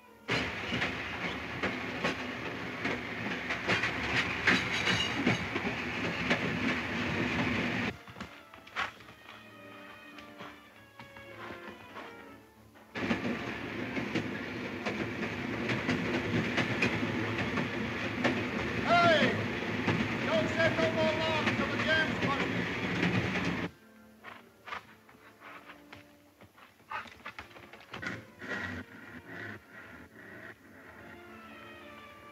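Loud clattering rumble of logging work, in two long stretches that start and stop abruptly, with a whistle rising and wavering a little past the middle of the second stretch. Quieter background music fills the gaps between and after them.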